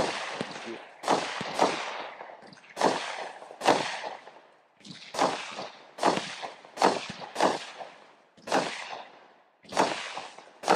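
Multi-shot consumer fireworks cake firing: about a dozen sharp bangs come roughly once a second, some in quick pairs, each followed by a fading crackle from the crackling stars.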